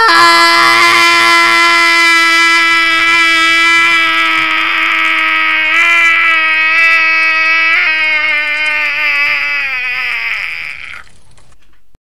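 One long, held scream from a person's voice, staying on one pitch for most of its length. It wavers briefly twice, then drops in pitch and trails off near the end.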